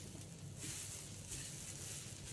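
Faint scraping of a spoon stirring grated coconut as it dry-roasts in a pan.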